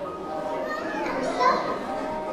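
A young child's voice speaking or calling out, loudest about midway, over faint music.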